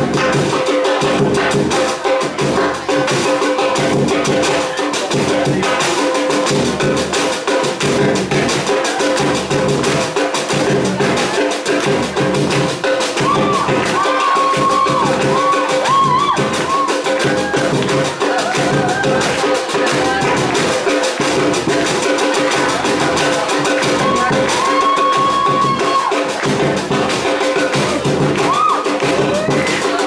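Samba music with percussion, driven by a steady deep drum beat about once a second.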